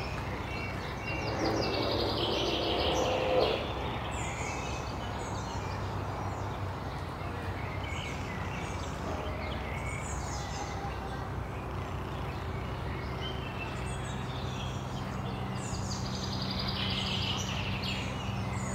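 Small songbirds chirping and singing on and off in the surrounding trees over a steady low background hum. A louder, unidentified mid-pitched sound passes between about one and three and a half seconds in.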